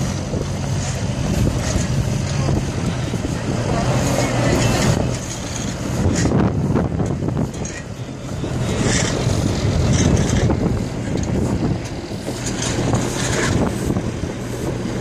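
A heavy vehicle's engine running steadily at idle, with wind noise on the microphone.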